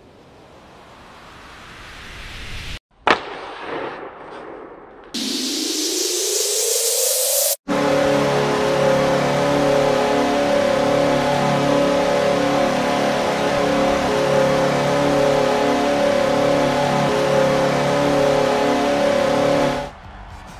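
Animated hockey slapshot sound effects. A rising wind-up noise builds to a sharp crack of stick on puck about 3 s in, and a rising whoosh follows as the puck flies. From about 8 s a long, steady, loud horn-like chord with a noisy crowd-like wash plays as the puck sits in the goal, cutting off just before the end.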